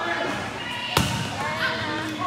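A volleyball struck hard by a hand once, about a second in, a single sharp slap, with people's voices in the gym around it.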